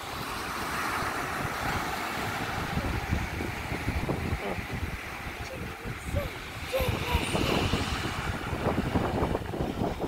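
Wind buffeting the microphone over the steady wash of ocean surf.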